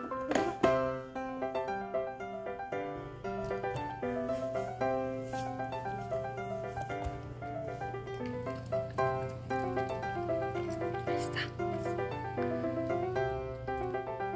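Background music: a light keyboard tune played note by note with a steady low hum beneath it.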